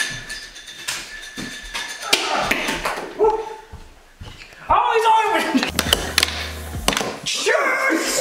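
Men's voices shouting and exclaiming without clear words, loudest about three and five seconds in, with several sharp knocks scattered between them.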